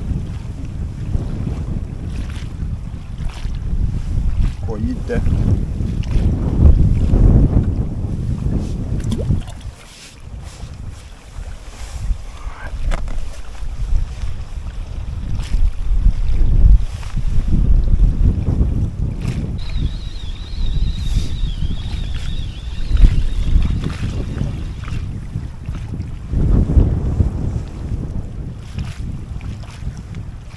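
Gusty wind buffeting the microphone: a low rumble that rises and falls. It eases off for a couple of seconds about ten seconds in, then comes back.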